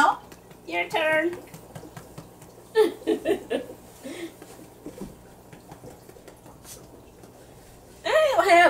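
Indistinct voices in two short bursts, the second broken into quick pulses like laughing, then low room sound with faint scattered clicks from about four seconds in.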